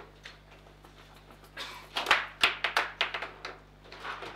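Table football in play: a quick flurry of hard knocks and clacks as the ball is struck by the plastic figures and rattles against the rods and table walls, starting about a second and a half in and lasting about two seconds.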